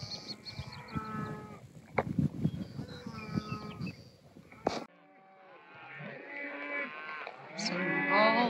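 Hereford and Angus beef cows and calves mooing, one call at a time, over a low rumble of wind on the microphone. After a sudden change about five seconds in, the wind is gone and the calls come more often and grow louder toward the end.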